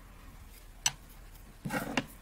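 Handling noise from a crochet hook and yarn being worked through the stitches to hide a yarn tail: one sharp click a little under a second in, then a short, louder rustle near the end.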